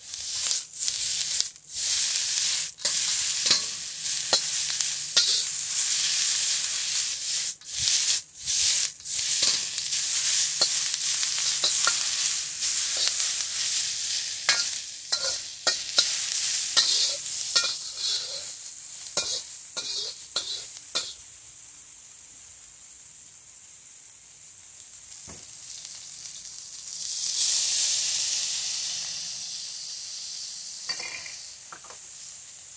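Vegetables sizzling in oil in a hot steel wok, with a metal wok spatula scraping and clinking against the pan as it stirs. The sizzle dies down about two-thirds through, then flares up again near the end.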